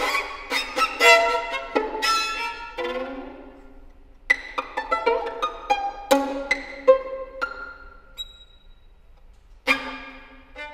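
Solo violin playing a contemporary étude: two flurries of sharply attacked notes, each left ringing and fading, then a quieter pause and a new loud attack near the end.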